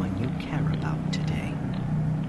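A person's voice speaking softly, partly whispered.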